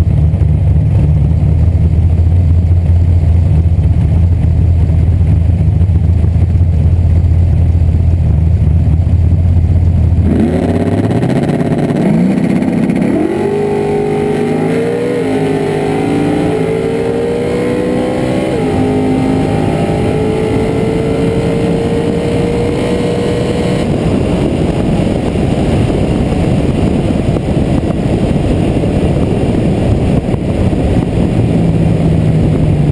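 Drag-race Ford Mustang's engine running loud and steady at the starting line. About ten seconds in it launches, and the engine note climbs through the gears with about three shifts. After about fourteen seconds of running the tone drops away into wind and coasting noise.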